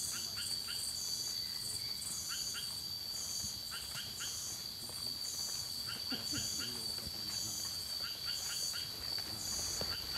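Nocturnal tropical rainforest insect chorus: one continuous high, steady trill, with a regular pulsed call above it about twice a second. Short chirps come in little groups of two or three every second or two.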